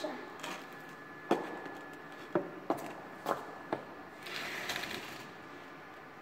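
Scattered sharp clicks and knocks from handling a stick-welding electrode holder and electrode, followed about four seconds in by a hiss lasting about a second.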